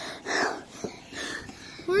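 A child breathing hard in a few heavy breaths, out of breath after running.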